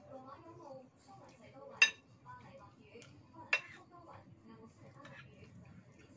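A spoon clinking twice against a ceramic bowl while eating, sharp and ringing, about two seconds and three and a half seconds in.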